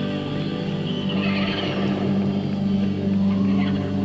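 Live rock band in a drifting jam passage: sustained low notes held underneath while higher tones swoop and glide about a second in.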